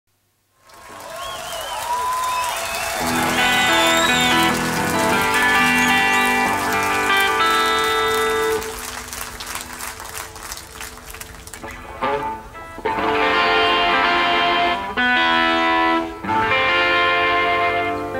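Live crowd cheering and whistling, then an amplified rock band's electric guitar chords ring out. After a quieter stretch of crowd noise, the band comes in loud with sustained chords broken by two short stops.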